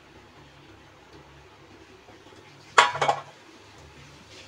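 Metal kitchenware clattering: a sharp clink about three seconds in, with a quick second knock just after. Before it there is only a faint steady hiss.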